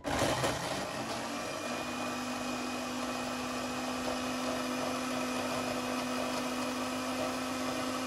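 Electric blender motor grinding chopped ginger and garlic into a paste: it starts suddenly, its hum rises a little in pitch over the first second or so as it comes up to speed, then runs loud and steady.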